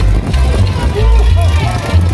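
Loud live carnival dance music from a street orchestra, with a heavy pulsing bass beat.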